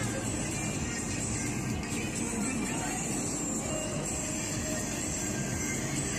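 Pop dance music playing at a steady level, heard as it was recorded outdoors, blended with the noise of the open street.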